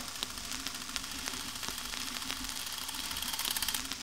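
Rapid clicking over a steady hiss, the clicks coming faster and louder near the end: an outro sound effect under a logo card.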